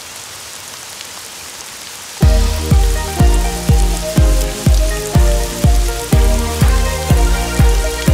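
Steady hiss of a rain sound effect. About two seconds in, music with a steady beat of about two beats a second comes in over the rain.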